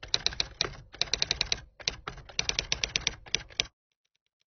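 Typewriter sound effect: rapid keystroke clacks, several a second, in a few short runs with brief pauses, stopping shortly before the end.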